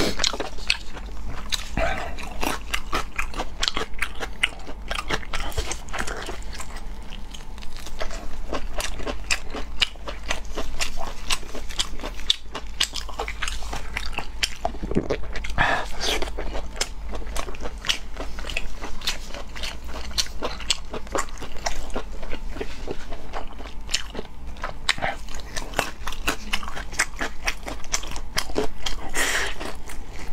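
A person biting and chewing soft, chewy braised food into a close lapel microphone: a steady stream of short clicking mouth sounds, louder around the middle and again near the end.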